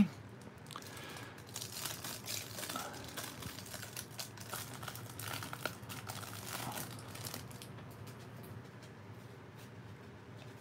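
Clear cellophane wrapper of a baseball card cello pack crinkling and tearing as it is pulled open by hand, a faint, crackly rustle that dies away about three-quarters of the way through.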